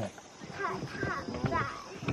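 Giant panda chewing a bamboo shoot: a run of short, crisp crunches at a steady pace, with people talking in the background.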